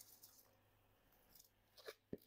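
Near silence, with one faint, short sound just before the end.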